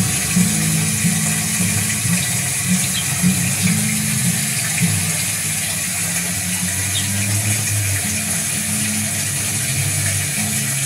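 Steady rushing and splashing of a fountain's water jet, with low notes changing every second or so underneath.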